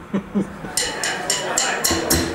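Rapid hi-hat taps on a drum kit, about five a second, coming in after a couple of spoken syllables, as a live band's song begins.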